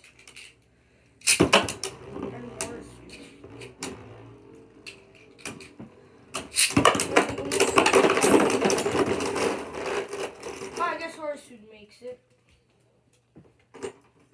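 Plastic-and-metal Beyblade spinning tops whirring and clashing in a plastic stadium. There are sharp knocks about a second in and scattered clatter after. About six and a half seconds in comes a loud, dense burst of clashing as more tops join the battle, dying down after about ten seconds.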